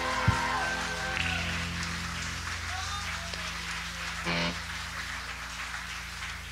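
A band's last chord rings out and fades over a steady amplifier hum. There is a sharp thump just after it begins and faint crowd cheers and whoops behind. A short pitched note sounds briefly about four seconds in.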